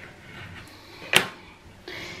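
A single sharp tap about halfway through: a small kitchen knife set down on a wooden cutting board after trimming puff pastry, amid faint rustling of the pastry being handled.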